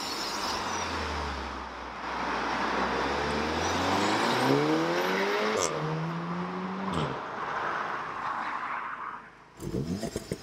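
Volkswagen Golf R Mk7.5's turbocharged four-cylinder engine, on its standard exhaust, revving. The note starts low, climbs steadily in pitch, holds higher for a moment, then cuts off sharply about seven seconds in, leaving a hiss that fades away.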